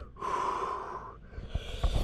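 A man gasping and breathing hard from the shock of icy lake water: one loud breath lasting about a second, then a shorter, sharper one near the end, with a few low thumps.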